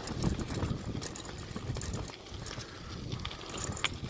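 Bicycle rolling along a rough dirt road: tyres crunching over the surface, with light irregular ticking and rattling from the bike and a low wind rumble on the microphone.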